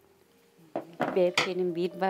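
A brief hush, then a sharp click, then a person starts speaking about a second in.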